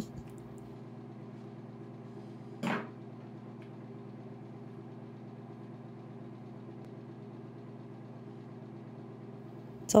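A low, steady electrical hum with a buzz of several even pitches, the background noise of the recording, interrupted once by a brief, louder sound about three seconds in.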